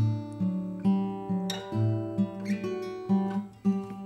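Acoustic guitar played fingerstyle: single plucked notes over a bass, at about two to three notes a second, each left ringing into the next.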